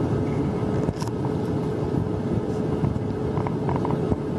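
Airliner cabin noise in flight: a steady low rumble of engines and airflow with a constant hum tone running through it, and a brief knock about a second in.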